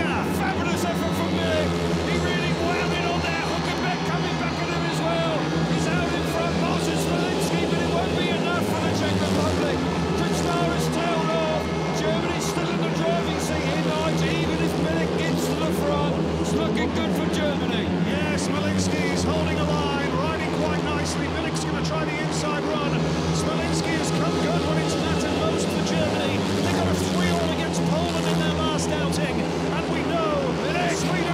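Four 500cc single-cylinder speedway bikes racing laps together, their engines running continuously, with a crowd beneath.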